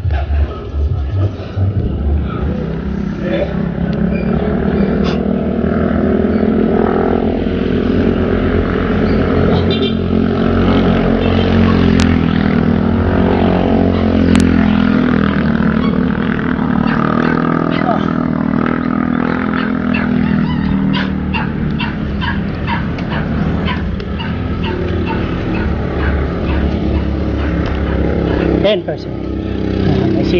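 Motorcycle engine running under load up a steep road, its pitch rising and falling with the throttle, over steady wind noise on the microphone. Two sharp clicks come near the middle.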